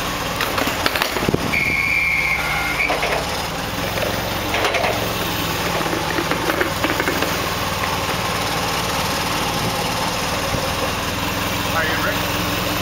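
Forklift engine running at a steady idle, with a few knocks as a large wooden crate is shifted on a steel flatbed trailer deck. A short, steady high-pitched tone sounds once, about a second and a half in.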